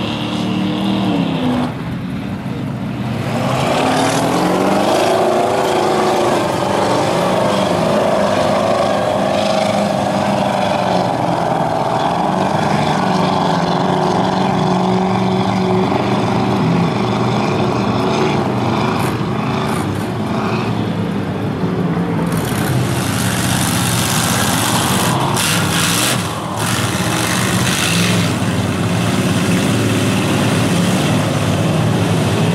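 Lifted pickup mud trucks' engines running hard at high revs through a mud bog. The pitch climbs a few seconds in and then holds. From about two-thirds of the way through, a brighter hiss of spraying mud and a few sharp cracks join in.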